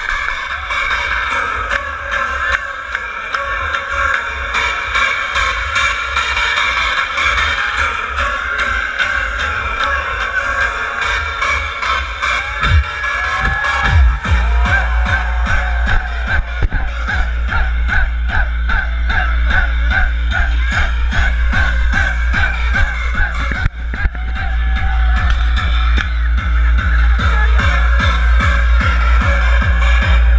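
Loud hardstyle dance music played live over a big festival sound system and heard from within the crowd. After a lighter build-up section, a heavy kick drum comes in about halfway through and keeps a steady, fast beat.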